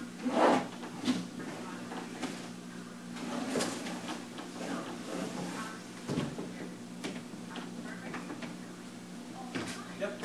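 A tall wooden bookshelf is being shifted and tilted through a doorway: irregular bumps and scrapes of the wood against the door frame and floor, the loudest bump about half a second in, over a steady low hum.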